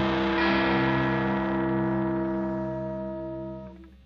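The closing chord of a garage-punk rock song: a held electric guitar chord with bass, struck again about half a second in and left to ring, fading steadily and cutting off near the end.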